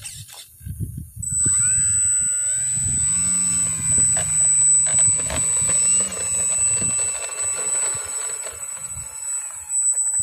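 Electric brushless motor and propeller of an RC model Cessna Skylane whining under throttle as it taxis. It is nearly quiet for the first second, then the pitch rises about a second and a half in and wavers up and down with the throttle, easing slightly near the end.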